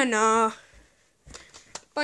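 A voice singing one drawn-out 'dun' note at the start, sliding down in pitch and then held for about half a second, followed by a few faint clicks.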